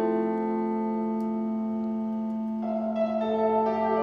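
Software piano chord held in a long, fully wet Gigaverb-style reverb wash (Max for Cats' Verbotron), its reverb time being turned up; a new chord swells in about two and a half seconds in.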